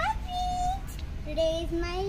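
A young girl's voice singing or sing-song calling in long held notes, each sliding up into its pitch, over a steady low rumble.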